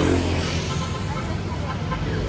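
Street traffic: a motor vehicle passing with a steady engine rumble, loudest at the start and easing off.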